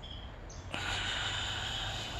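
A man's long, steady deep breath, an even hiss of air that starts a little under a second in.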